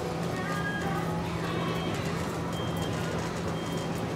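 Busy bookstore ambience: a steady low hum with faint voices and background sound, and two short high-pitched electronic beeps about a second apart in the second half.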